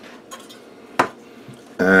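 Sheet-metal clink from the power meter's steel top cover and chassis being handled: one sharp click about halfway through, over faint handling noise.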